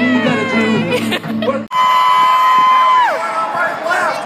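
Amplified live music with singing, cut off abruptly a little under two seconds in. Then a single long high vocal note is held steady and slides down in pitch near the end.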